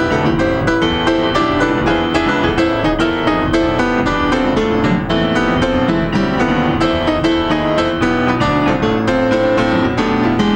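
Piano-sounding keyboard played solo in an instrumental break, a busy stream of quick notes and chords with a steady level throughout.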